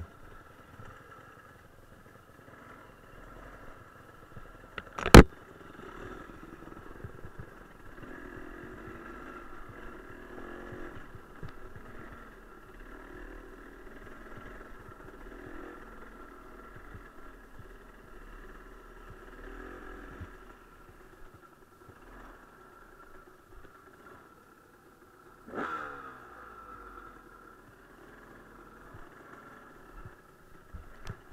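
Enduro dirt-bike engine running steadily beneath the rider over a rough trail. A single sharp, loud knock comes about five seconds in, and a softer thump later on.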